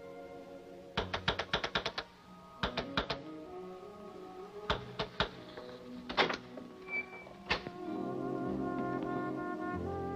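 Orchestral film score with sustained, brass-like held tones that swell louder near the end. Over it comes a scatter of sharp clicks and knocks, with a quick rattling run of about seven about a second in and smaller clusters after.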